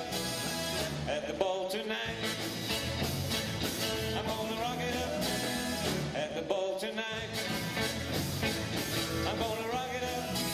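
Live rock and roll band playing a 1950s-style number with electric guitars, acoustic guitar and drums over a steady beat.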